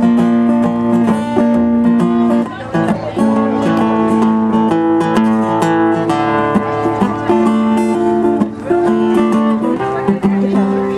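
Acoustic guitar strummed steadily, the chords ringing and changing every second or so, with no singing.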